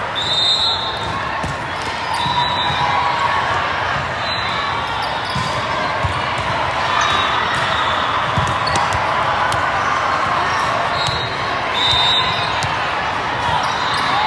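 The continuous din of a large hall full of volleyball courts: many voices of players and spectators blended together, with frequent short thuds of volleyballs being struck and bouncing, and brief high-pitched squeaks throughout.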